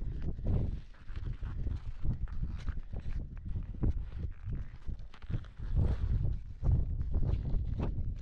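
Ski boots stepping in snow in an uneven rhythm while hiking up a ridge, over a steady low rumble.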